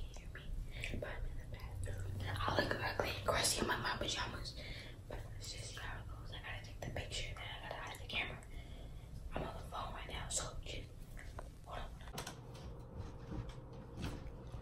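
A girl whispering to the phone close to the microphone, in short phrases with brief pauses.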